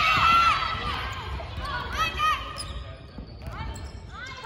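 Girls' volleyball team shouting high-pitched calls during a digging drill in a gymnasium, with thuds of the volleyball off forearms and the floor. The shouts come at the start and again about two seconds in, then die down near the end.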